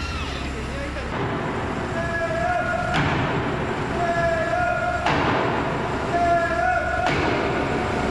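A hammer driving a tight-fitting steel pin, about 70 kg, into a giant robot's steel leg frame: sharp bangs about every two seconds, four in all, each trailing off in the hall's echo. The pin has stuck the last few centimetres short and is being forced home.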